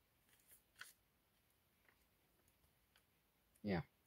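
Pages of a paperback coloring book turned by hand: faint, brief paper rustles about half a second and a second in, then quiet.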